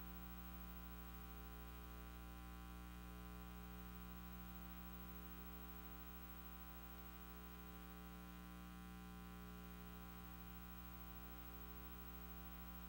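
Faint, steady electrical mains hum with a faint hiss, unchanging throughout; nothing else stands out.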